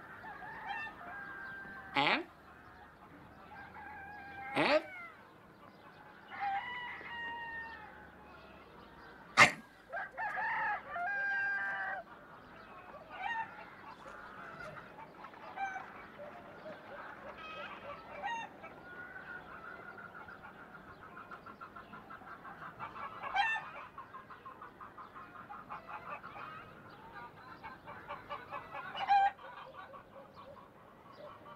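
Farmyard chickens clucking and a rooster crowing, in short repeated calls. Several sudden sharp sounds stand out, the loudest about nine seconds in. From about twenty seconds in, a rapid, even pulsing runs for several seconds.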